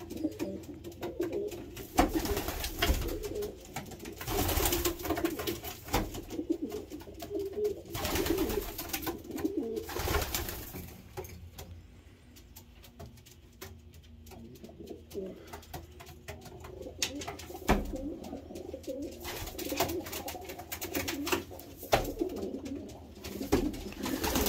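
Racing pigeon cocks cooing in a loft, the low repeated coos of males claiming newly opened nest boxes, with occasional short sharp clatters. The cooing eases off for a few seconds mid-way, then picks up again.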